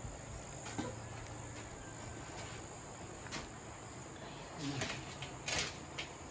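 Steady background chirring of crickets, with a few light knocks near the end as a stack of round metal drying trays is handled and set down.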